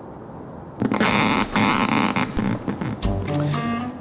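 Electric eel's electric discharges picked up by electrodes in its tank and played through a speaker: a sudden loud crackling buzz about a second in, lasting over a second, followed by more shorter bursts. Steady musical tones come in near the end.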